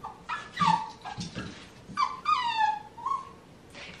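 Cavapoo puppy whimpering: a few short high whines in the first second, then a longer whine about two seconds in that falls in pitch.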